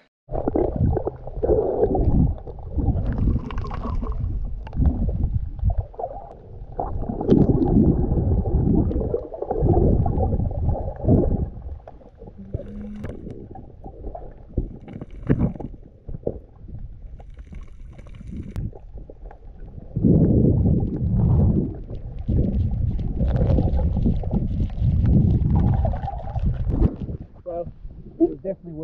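Muffled underwater water noise of a snorkeller diving: rushing and bubbling in uneven loud surges, quieter for a few seconds in the middle.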